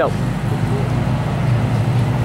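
A motor running with a steady low hum under outdoor background noise.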